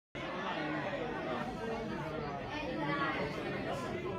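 Several voices talking over one another at a steady level: overlapping chatter with no single clear speaker.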